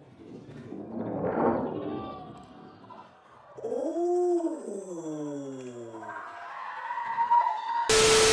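Sound effects edited over a replay: a noisy rush about a second in, then a drawn-out, voice-like cry that swells and slides far down in pitch, then a steady high tone, cut off at the end by a burst of TV static.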